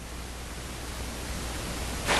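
Steady hiss of classroom room tone with a low hum underneath, slowly getting louder.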